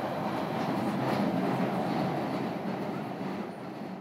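A train running, a dense steady rumble like an Underground train, fading out over the last second or so as the track closes.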